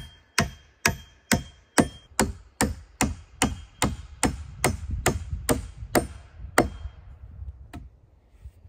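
Hand axe striking a log in quick, even one-handed blows, about two and a half a second. The blows stop near the end after one last strike.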